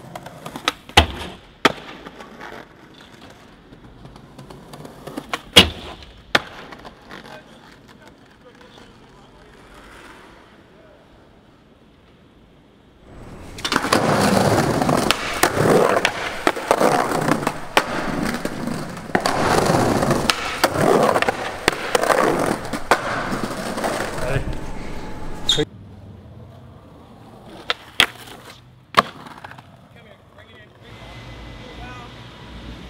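Skateboard sounds: sharp clacks of the board popping and landing, with wheels rolling on pavement between them. In the middle, a long loud stretch of rough wheel noise, as the board rolls hard over brick paving.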